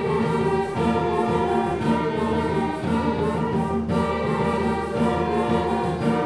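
A high school concert band of woodwinds and brass playing sustained chords that change about once a second.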